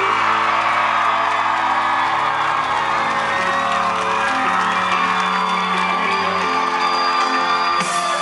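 Live rock band playing, with long held chords over a stepping bass line, and the audience cheering and whooping over the music, recorded from within the crowd.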